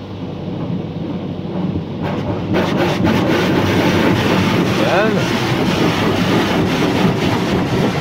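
Automatic car wash's rotating brushes scrubbing and slapping against the car's side and windows amid spraying water, heard from inside the cabin. The rushing noise grows louder about two seconds in as a brush reaches the door.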